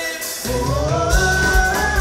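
A live dance band's amplified music: the bass and drums drop out for about half a second at the start, then come back with a steady kick drum under a held melody line that steps up in pitch.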